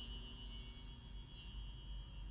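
Faint, high musical chime notes ringing out and slowly dying away as the song ends, struck again about a second and a half in.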